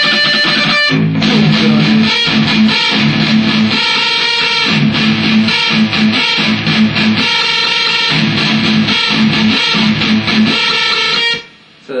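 Electric guitar played through an amplifier: a rhythmic, chugging riff with a short break about a second in, cutting off shortly before the end.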